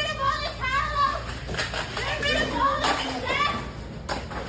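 High-pitched shouting voices: a string of short, shrill yells and cries, with no clear words.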